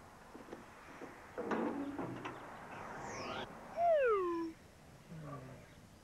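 Cartoon sound effects for an animated letter on its way: a short rushing whoosh about a second and a half in, then a high whistle that rises and falls, and, loudest, a falling slide-whistle glide about four seconds in, followed by a softer low falling glide.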